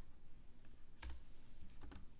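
A few computer keyboard keystrokes: one sharp click about a second in and a quick pair near the end, over a faint low hum.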